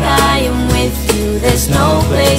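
Electronic pop music with a steady beat, bass and a melodic instrumental hook, between the song's sung lines.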